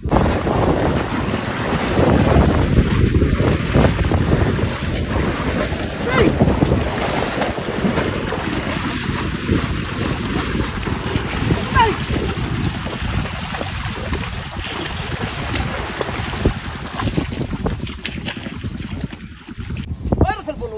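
Muddy water splashing and churning steadily as water buffalo wade a wooden-wheeled cart through a flooded rice paddy.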